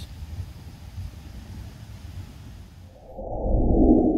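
Low wind rumble on the microphone. About three seconds in, a loud, muffled whoosh swells up as an edited transition effect into the channel's logo.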